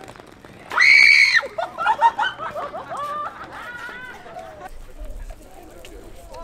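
A short, very high-pitched startled scream about a second in, from a passer-by frightened by a prankster disguised as a bush, followed by a few seconds of laughter and excited voices.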